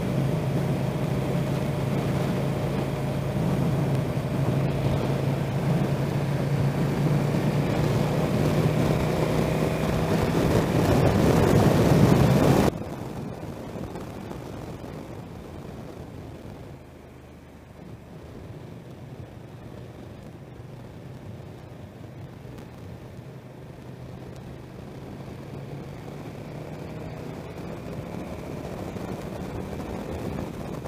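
Riding noise from a moving vehicle on a highway: a steady engine hum mixed with wind noise, rising slightly in pitch, then dropping abruptly to a much quieter steady hum about 13 seconds in.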